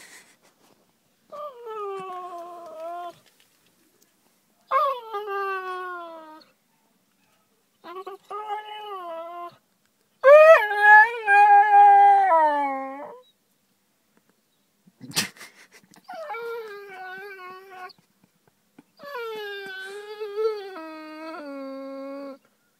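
Basset hound crying in long, drawn-out wails, about six in a row, each sliding down in pitch, the loudest and longest about halfway through. She is crying because she is upset. A single sharp click comes shortly after the loudest wail.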